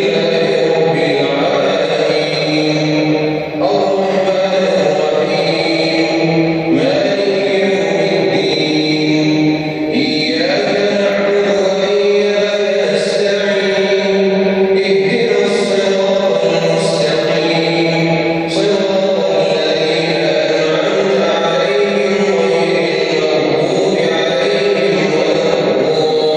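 A man chanting in Arabic over a mosque's loudspeakers, one voice holding long melodic notes in phrases with short breaths between them.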